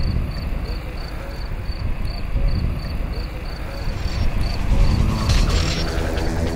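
Outdoor ambience: a steady low rumble and haze, with a thin high chirp repeating about four times a second that stops a little after the middle. Music comes in near the end.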